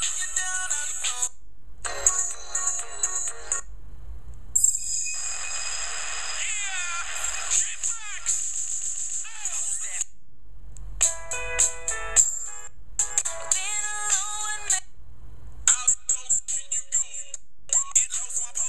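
R&B and hip-hop songs with vocals playing very loud through the LG GD510 Pop's small built-in loudspeaker. The sound is thin and a bit rattly, with almost no bass. The music stops and restarts several times in short gaps as tracks are skipped.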